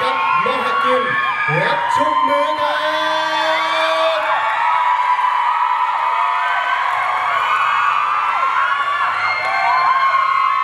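A crowd of fans screaming and cheering, many high voices overlapping.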